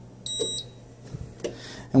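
Allied Healthcare AHP300 transport ventilator giving a short, high-pitched electronic double beep as its quick start button is held down, signalling that the new settings are being saved over the stored quick start protocol.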